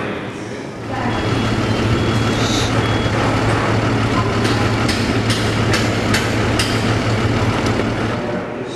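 Construction-site machinery: a heavy vehicle's engine running steadily with a low hum. About a second in, a high beep sounds on and off for a couple of seconds, and in the second half a string of sharp knocks rings out.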